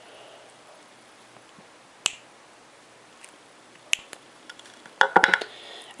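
Wire cutters snipping the excess end off a head pin wire: a sharp snap about two seconds in, another near four seconds, then a quick cluster of clicks near the end.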